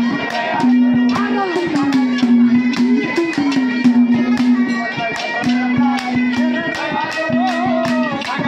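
Live Haryanvi ragni folk music: a singer holding long, gliding notes over harmonium, with a clay pot drum (ghara) and other hand percussion struck in a fast, steady rhythm.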